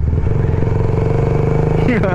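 Motorcycle engine running at a steady speed, an even drone that holds the same pitch throughout.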